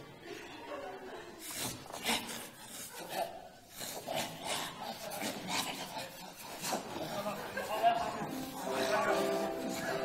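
Short, rasping vocal noises without words, one every second or so, followed by music with held notes coming in near the end.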